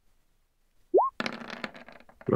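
A computer sound effect: a short, quickly rising electronic tone about a second in, then about half a second of crackling, rattling clicks.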